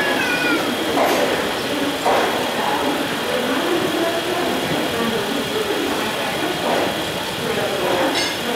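Passenger train coaches rolling slowly into a station, the wheels knocking over rail joints about once a second. Right at the start comes a brief high, slightly falling squeal, with voices in the background.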